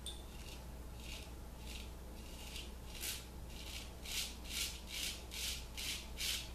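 Straight razor scraping through three days' stubble on a lathered cheek in about a dozen short strokes, coming faster in the second half.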